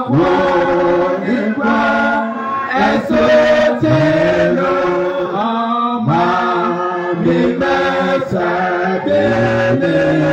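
A church congregation of men and women singing a hymn together, in long held notes phrase after phrase.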